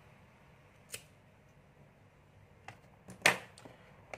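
Handling clicks on a tabletop: one light click about a second in, then a quick cluster of clicks near the end, the loudest a sharp knock as a plastic disposable lighter is set down and a multimeter test probe is picked up.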